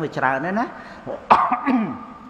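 A man coughs once, sharply, into a close microphone, about a second and a half in, after a few spoken words.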